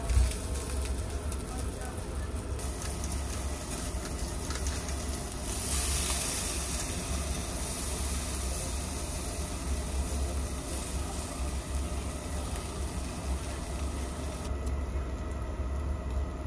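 Wagyu steak sizzling on a wire-mesh grate over charcoal, a steady hiss of fat cooking that brightens for a couple of seconds about six seconds in. Under it runs a steady low rumble.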